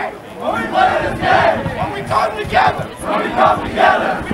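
A football team huddled together chanting in unison: a string of rhythmic group shouts, about two a second.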